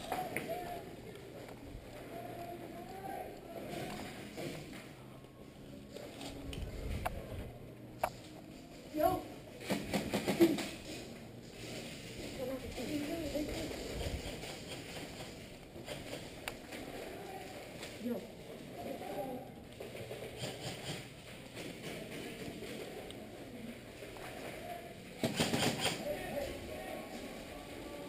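Indistinct, muffled voices, with scattered sharp clicks and knocks and a brief louder noisy burst about 25 seconds in.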